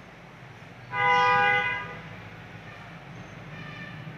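A vehicle horn sounds once about a second in, a loud steady honk of just under a second, over a low steady hum.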